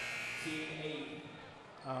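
A high, steady buzzing tone that fades out after about a second, over faint voices in a large gym.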